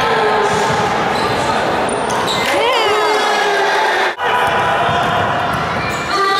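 Basketball game sounds on a wooden sports-hall court: the ball bouncing and a short cluster of squeaks a little before the middle, under shouting players and spectators, all echoing in the hall.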